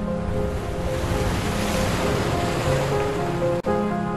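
Slow instrumental music with sustained notes, under a wash of surf that swells up over the first two seconds and then fades away. The sound drops out for an instant near the end.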